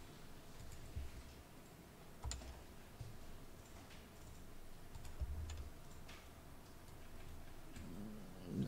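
A few faint, widely spaced computer keyboard keystrokes and clicks.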